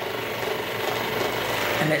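A steady, even background machine noise runs on unchanged, with no speech over it until a single word near the end.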